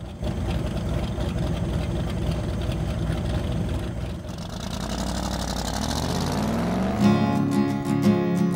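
An old truck's engine running, then revving up with a rising pitch about five seconds in. Acoustic guitar music comes in near the end.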